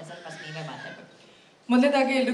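A woman's voice through a stage microphone and PA: faint speech trailing off over the first second, a brief lull, then loud speech starting abruptly near the end.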